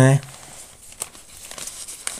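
Faint rustling and crinkling of paper as a handwritten notebook sheet is moved to uncover the next question, with a faint click about a second in.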